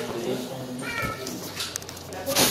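Indistinct background voices, with a brief high-pitched call, falling slightly, about a second in.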